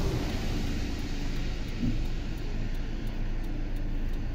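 Car engine idling, a steady low rumble heard from inside the car's cabin.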